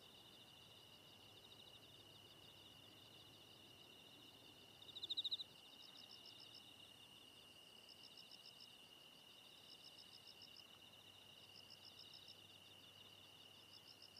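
Faint insects chirping in a quiet background: a steady high-pitched trill with pulsed chirps repeating about every second or so, and one louder chirp about five seconds in.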